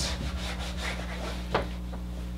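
Whiteboard marker rubbing across the board in short strokes, with one sharp tap of the tip about a second and a half in, over a steady low electrical hum.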